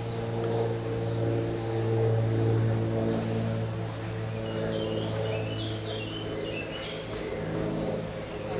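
A steady low hum with a row of even overtones, as from a running motor. A few short bird chirps come about halfway through.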